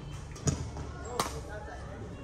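Badminton racket strings striking a shuttlecock during a rally: two sharp smacks, the first about half a second in, the second under a second later.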